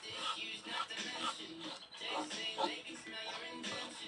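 Background music with a voice in it.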